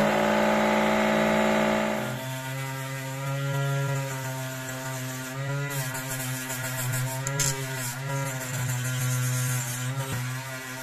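Homemade battery-powered flexible-shaft rotary tool running with a small cutoff disc: a loud, steady high whine for about the first two seconds. After about two seconds it drops to a quieter, lower motor hum whose pitch wavers as the disc is worked against the edge of a circuit board.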